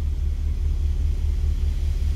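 Steady low rumble inside an Audi A6's cabin.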